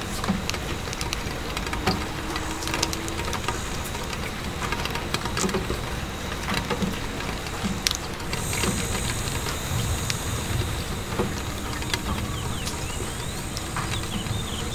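Steady rain pattering on a window, with scattered sharp clicks and crackles through it. A thin high hiss joins about eight seconds in.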